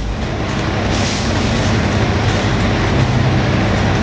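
Steady engine drone and road noise inside the cab of an old truck while it is driving.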